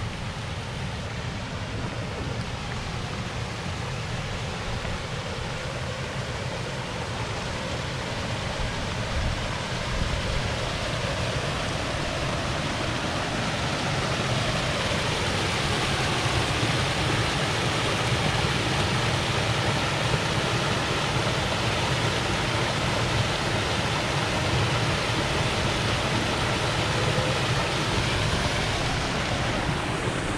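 Small rock waterfall cascading into a pond, a steady rush of falling water that grows louder over the first half and then holds steady.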